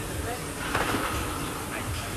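An athlete drops off gymnastic rings and lands on the rubber gym floor: one brief thud about three-quarters of a second in, over steady gym background noise.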